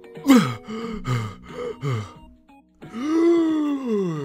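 A cartoon character's voice making effortful vocal noises: three short, breathy, falling groans about a second in and after, then one long drawn-out gasp that rises and falls in pitch, over soft background music.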